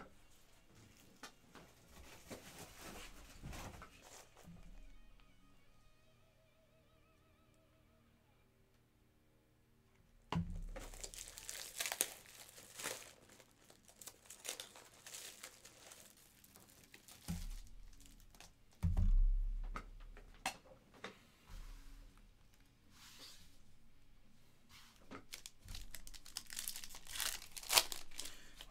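Plastic and foil trading-card wrappers crinkling and tearing as packs are handled and opened. It comes as a run of rustling bursts from about ten seconds in, with a few soft thuds, over faint background music.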